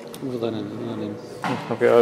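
A man's voice, low and drawn out, then a spoken "okay" near the end, with a few faint handling clicks.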